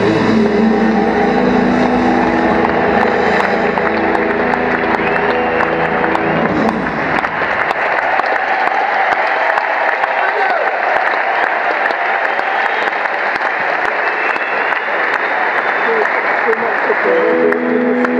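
The band's last notes fade out over the first few seconds, then a large arena crowd applauds and cheers. An electric guitar starts playing again about a second before the end.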